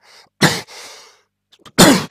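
A man coughing twice, two short loud coughs about a second and a half apart.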